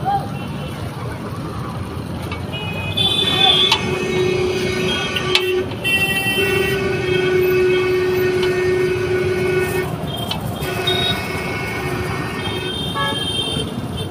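Vehicle horns honking over steady street-traffic noise: short toots from about three seconds in, one horn held for several seconds in the middle, and more short honks near the end.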